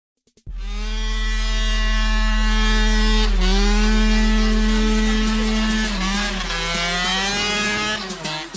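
Small moped or motorcycle engine revving high and held near steady with a buzzy note. The pitch dips briefly about three seconds in and wavers up and down near the end.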